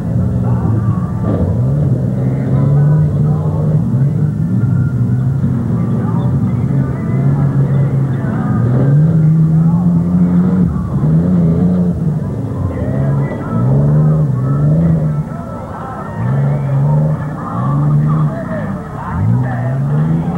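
Compact pickup truck's engine revving hard and easing off over and over as it drives over dirt humps, its pitch climbing, holding and dropping with each burst of throttle.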